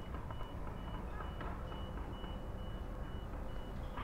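A high electronic beep that keeps coming and going at one pitch, over a steady low background rumble.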